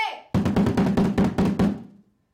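Rapid roll of wooden-stick strokes on a homemade taiko drum made from a car tire with packaging tape stretched over one face, starting about a third of a second in and stopping just before the end.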